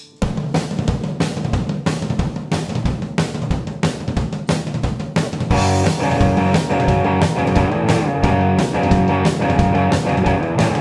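Live rock band intro: a drum kit beat with kick and snare. An electric guitar comes in about five and a half seconds in, and the music gets louder.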